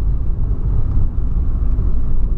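Inside the cabin of a moving Volkswagen Polo Sedan: a steady low rumble of engine and road noise.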